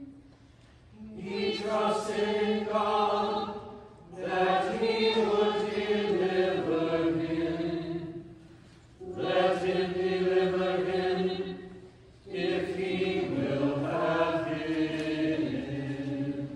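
Mixed choir of adult and young voices chanting a psalm, sung in four phrases with short pauses for breath between them.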